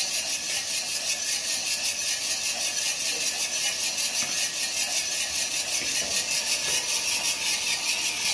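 Green coffee beans tumbling in a motor-turned stainless steel drum roaster, freshly charged at the start of the roast: a steady, hissy rattle that pulses evenly about five times a second.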